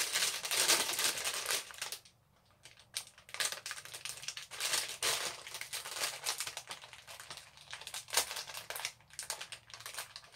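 Clear plastic bag crinkling and crackling in irregular bursts as a small ornament is unwrapped from it by hand, with a brief pause about two seconds in.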